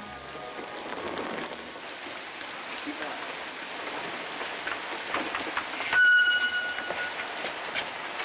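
Heavy rain pouring down on a street, a steady hiss. About six seconds in, a sharp click is followed by a high, steady horn-like tone lasting about a second.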